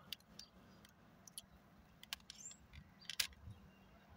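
Faint, scattered crackles and clicks from a crumpled, empty plastic water bottle being handled.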